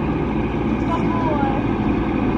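Farm tractor engine running with a steady, unchanging drone as it approaches.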